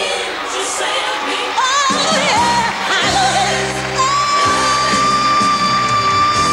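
Female R&B singer belting live over her band: sung runs that bend in pitch, with the bass dropping out and returning about two seconds in, then one long high held note from about four seconds in.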